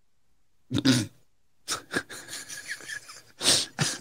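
Men's wordless vocal reactions: a short voiced laugh or exclamation about a second in, then scattered breathy laughter and a loud sharp exhale just before the end.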